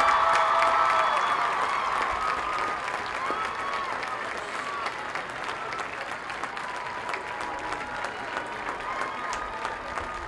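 Crowd applauding, loudest at the start and slowly dying down.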